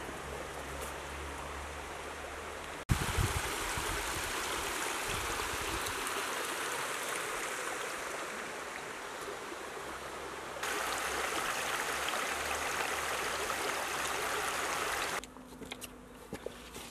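Steady rush of running water, jumping in loudness at a few abrupt cuts and falling away near the end. A loud low bump comes about three seconds in.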